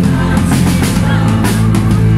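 Live indie rock band playing loudly: electric guitar, bass and a drum kit keeping a steady beat.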